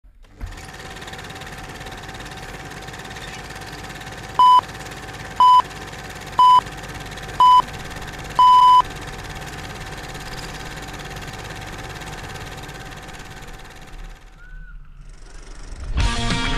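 Electronic race-start countdown: four short beeps about a second apart, then a longer final beep. A steady faint tone and background hiss run underneath.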